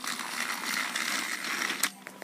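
Battery-powered toy train's geared motor whirring and rattling, cut off by a sharp click near the end.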